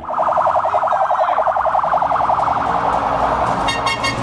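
Police car's electronic siren sounding a fast, pulsing warble.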